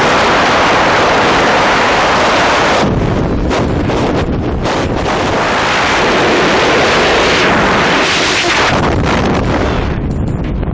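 Freefall wind rushing over the camera microphone during a tandem skydive, a loud, steady roar. Near the end it begins to thin and drop as the parachute opens.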